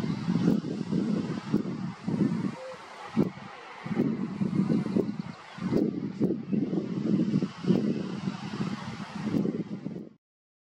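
Wind buffeting the microphone: a low rumble in uneven gusts, dropping away briefly around two, three and five seconds in.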